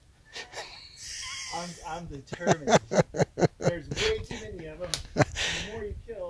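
A quick run of sharp slaps, about a dozen in three seconds starting about two seconds in: a man swatting at biting insects, killing most of them. His voice runs under the slaps without clear words.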